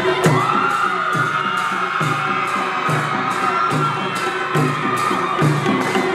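A traditional Nepali panche baja band of drums, cymbals and horns (narsinga and karnal) playing. A long high wind note is held for about five seconds over a steady drum beat with regular cymbal strokes.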